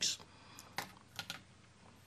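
Three short, soft clicks about a second in, like keys or buttons on a computer keyboard being pressed, over quiet room tone.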